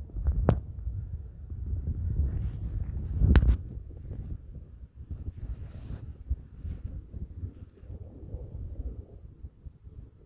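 Wind buffeting a phone microphone: a gusty low rumble that is strongest in the first few seconds. Two sharp knocks from handling the phone come at about half a second and again about three seconds in.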